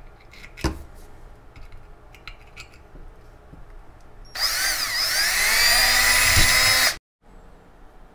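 Cordless drill with a small bit spinning up and running for about two and a half seconds as it drills a hole through a thin-walled model-rocket body tube; it cuts off suddenly near the end. A single knock sounds before it, under a second in.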